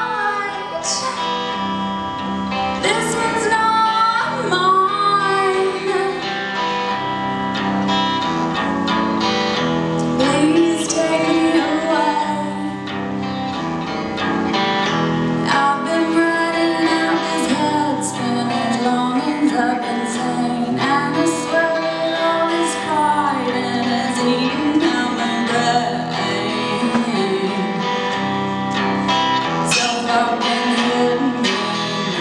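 A woman singing a song while playing an electric guitar through a small combo amplifier, the guitar and voice running continuously together.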